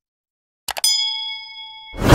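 Two quick mouse-click sound effects, then a notification-bell ding that rings with clear overtones and fades over about a second: the sound effect of a subscribe button and bell being clicked.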